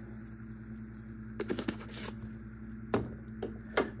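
Spice shaker being shaken over a steel bowl, giving a few faint short shakes and taps about one and a half, three and nearly four seconds in, over a steady low hum.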